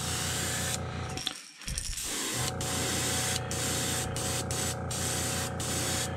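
Airbrush spraying pearl white paint at about 25 psi: a steady hiss of air and paint that cuts out briefly about a second and a half in, then resumes. A steady low hum runs beneath it.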